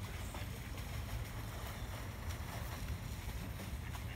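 Steady low wind rumble on a phone's microphone, even in loudness throughout.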